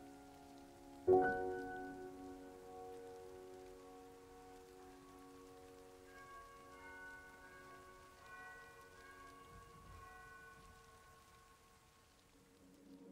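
Soft, slow solo piano: a chord struck about a second in and left to ring and fade, then quiet high notes played sparsely over it.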